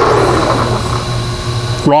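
1970s Bridgeport milling machine switched on and running, over the steady hum of its rotary phase converter; the spindle has started turning the wrong way, in reverse.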